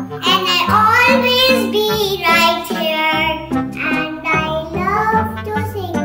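A children's song: a child's voice singing over an instrumental backing of held notes that change every half second or so.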